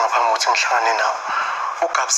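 Speech only: dialogue in a television drama, sounding thin with almost no bass.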